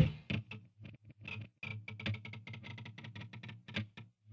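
Quiet, sparse guitar passage: short plucked notes, a few a second, over a low held pitch, between sections of loud distorted heavy metal.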